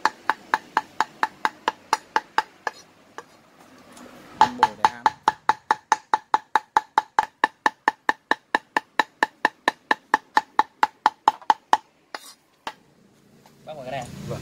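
Cleaver mincing duck meat on a round chopping board: quick, even chops about five a second, each a sharp knock with a short ring. The chopping pauses for about a second and a half around three seconds in, then runs on and stops near twelve seconds with a couple of last chops.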